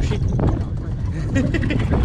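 Open safari game-drive vehicle driving along a bumpy dirt track: a steady low engine and road rumble with uneven buffeting.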